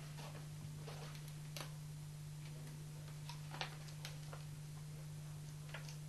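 Faint, irregular small clicks and taps of stickers being peeled off and pressed by hand onto a paper calendar poster on a wall, over a steady low hum.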